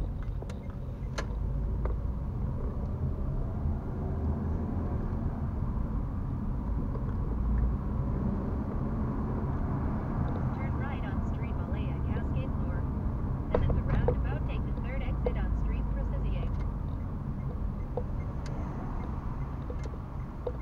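Inside a car's cabin: the steady low rumble of the engine and tyres as the car drives along city streets, with scattered small clicks and rattles from about ten to sixteen seconds in.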